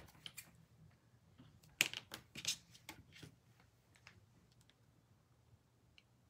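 Small scissors snipping a small decorative swirl piece: several short, sharp snips, most of them between about two and three seconds in.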